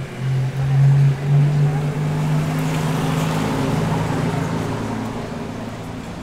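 A motor vehicle driving past on the street. Its engine note climbs in pitch over the first couple of seconds as it accelerates, then swells with tyre and road noise a few seconds in and fades away.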